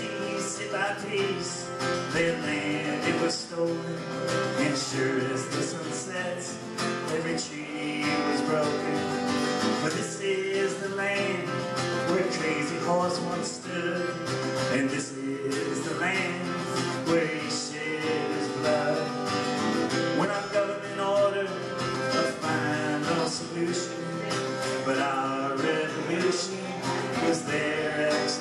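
Live folk song: a steel-string acoustic guitar strummed steadily under a man's singing voice, amplified through a PA system.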